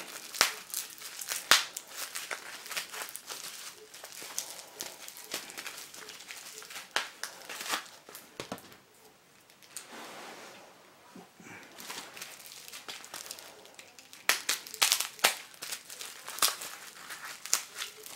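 Plastic bubble wrap and packing tape crinkling and tearing as a wrapped bundle is opened by hand. It comes in irregular crackly bursts, with a short lull about halfway and busier crackling near the end.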